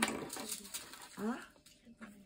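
A sharp tap at the start, then paper rustling as a page of a ring binder is turned over. A short rising "ah?" from a woman's voice comes a little past the middle.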